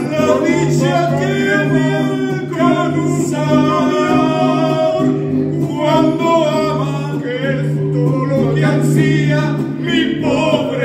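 A man singing a song into a handheld microphone, backed by the sustained chords of a mariachi band's accompaniment.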